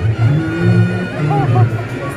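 Live Reog Ponorogo accompaniment music heard amid a crowd: a held, reedy horn-like melody over repeated low drum and gong beats, about two to three a second.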